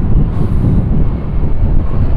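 Wind rumbling steadily on the microphone of a moving motorcycle, with the ride's engine and road noise underneath.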